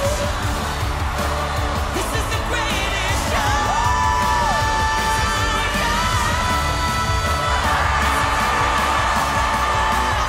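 Live pop singing over a loud full band, with a long held high note from about three and a half to seven and a half seconds in, then the vocal steps to a new sustained pitch.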